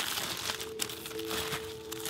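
A foil-lined paper sandwich wrapper and deli paper crinkling and rustling as hands unwrap a sandwich.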